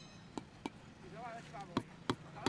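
A mallet knocking on wall-top bricks as they are tapped down to bed them: three sharp knocks, the last near the end, with voices in the background.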